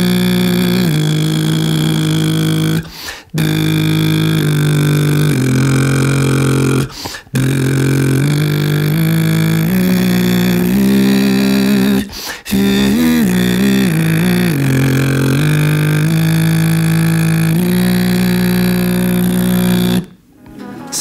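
Beatboxer's lip oscillation, a pitched buzz of the lips, with a sung note held a fixed interval above it. The two pitches step together through a melody in four long phrases, with short breaks for breath between them. The pitch wobbles in quick runs a little past the middle.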